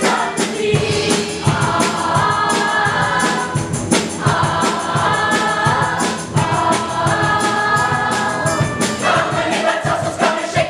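A large ensemble of singers belting an upbeat musical-theatre number in held chorus phrases over accompaniment with a steady beat.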